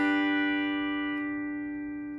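A pedal steel guitar chord picked once and left ringing, fading slowly as its high overtones die away. The steel bar has been slid off the third string to mute it, while the fourth and fifth strings keep ringing.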